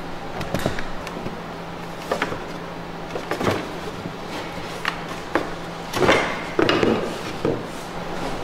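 Irregular wooden knocks and taps from ribs and planking being worked into a birchbark canoe hull, with a louder cluster of knocks about six to seven seconds in.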